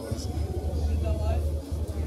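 A low rumble under faint voices of people talking.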